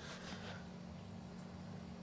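Mantis Tornado 150 protein skimmer's pump running at speed step three, giving off the tiniest of hums: a faint, steady low tone. The motor is brand new and has not yet bedded in.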